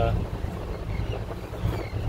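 Steady low rumble aboard a moving car ferry under way, with some wind noise.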